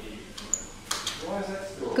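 A brief high click and a short knock, then a faint voice speaking.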